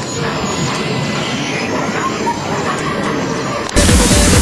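A dense, noisy din with mixed clatter and faint voices. Near the end it is cut off by the sudden start of loud music with heavy bass.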